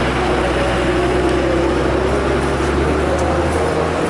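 A motor vehicle engine running steadily with a constant low hum, amid street noise.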